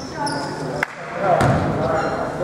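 Basketball bouncing on a hardwood gym floor, with a sharp knock a little under a second in, among voices in a large, echoing gym.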